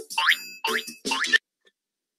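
Cartoon 'boing' sound effect from a children's animal-sounds app: about three quick rising springy glides, cutting off abruptly about a second and a half in.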